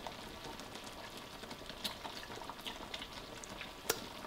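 Faint bubbling of seblak broth simmering in a wok, with scattered small pops. A single sharp click near the end.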